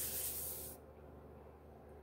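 A hand brushing across the surface of a hard cardboard box, a short hissing rub that stops under a second in. Faint room tone follows.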